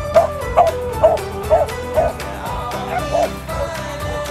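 A dog barking in a quick run of short barks, about two a second, over background music with a steady beat.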